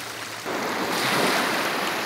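Surf washing onto a gravel beach: a rush of water that starts suddenly about half a second in, is loudest around a second, then slowly eases.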